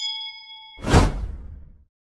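A notification-bell ding rings with several clear partials for most of a second. It cuts into a loud whoosh that peaks about a second in and fades out: an animated subscribe-and-bell sound effect.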